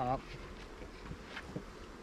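Honey bees flying around their hives, a steady buzzing of many bees.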